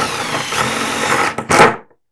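A Ryobi cordless impact driver runs under load, driving a galvanized self-tapping sheet-metal screw through a PVC tee into PEX pipe. It runs for about two seconds, stops briefly, then gives one last short, loudest burst as the screw goes home.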